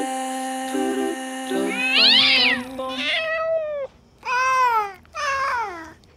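A domestic cat meows four times, each meow a short cry that arches or falls in pitch; the first and loudest comes over the last held note of a song, which ends about three seconds in.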